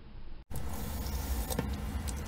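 Water running from a kitchen faucet into a stainless steel sink: a steady rushing noise that starts abruptly about half a second in, with a few light knocks.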